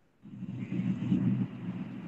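A low rumbling noise, lasting a little under two seconds, coming over a video-call line.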